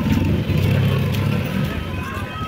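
A motor vehicle engine running, swelling and then easing off over about a second.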